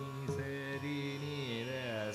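Carnatic concert music in Raga Thodi: a melodic line sliding and oscillating through gamakas over the steady tanpura drone, with a few light drum strokes.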